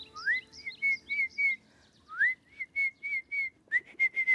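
A person whistling a bird-like wake-up call: a rising swoop into a quick run of four or five short chirpy notes on one high pitch. The phrase comes twice, and a third swoop starts near the end.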